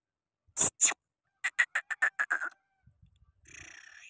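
Black francolin calling: two loud, harsh notes, then a quick run of about eight shorter notes that fall slightly in pitch.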